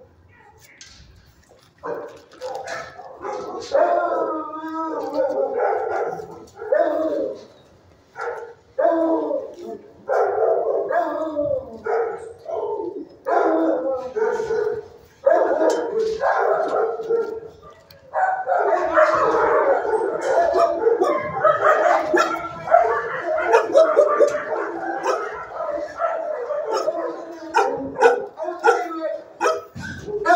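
Shelter dogs barking and howling, in broken runs at first, then almost without pause from about halfway through.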